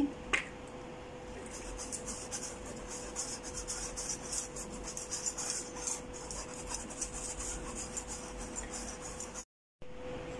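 Wire whisk rubbing flour through a fine metal mesh sieve: a quick, continuous scratching and rasping, with a faint steady hum beneath. The sound drops out briefly near the end.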